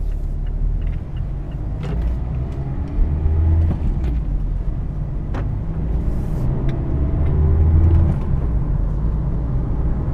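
The 2017 Mazda Miata RF's four-cylinder engine, heard inside the cabin, pulling away and accelerating under load. Its note climbs in pitch a few times as it works through the manual gearbox, with a deep low rumble and a few sharp knocks.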